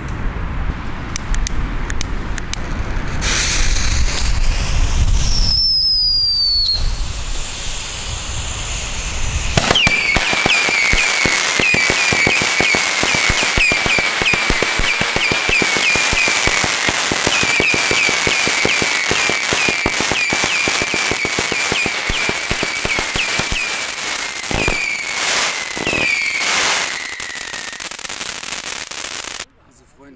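Pyroland 'Hass' whistle battery (Heuler cake) firing a rapid string of loud, shrieking whistling shots for about twenty seconds from ten seconds in, each whistle dipping slightly in pitch, with sharp cracks throughout; it stops abruptly near the end. Before it starts there is a low rumble with scattered pops and one falling whistle.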